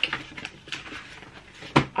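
Pages of a paper booklet being leafed through and handled, soft rustling and small clicks, with one sharper tap or click near the end.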